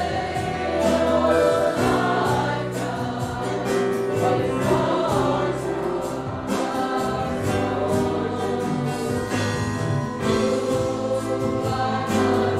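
A church congregation singing a hymn together, accompanied by a small instrumental ensemble with violins.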